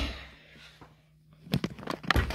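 Knocks and clicks from handling: a knock that fades over the first half-second, about a second of quiet with a faint low hum, then a few quick clicks and knocks near the end.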